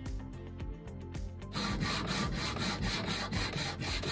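Hand sanding a bare wooden drawer front with a sanding sponge: quick back-and-forth rubbing strokes that start about a second and a half in, over background music.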